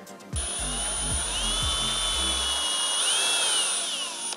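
Cordless drill boring a screw hole into a walnut leg, its motor whining steadily from about a third of a second in, with a brief dip in pitch about three seconds in.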